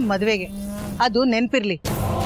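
A woman's voice speaking, with a short steady held tone in the middle. The sound drops out briefly just before the end.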